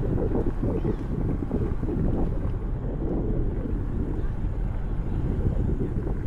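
Wind rushing and gusting unevenly over the microphone of a camera mounted on the roof of a moving vehicle, over the low rumble of the drive.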